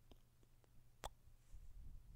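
A single short lip smack of a kiss, about halfway through, against near silence.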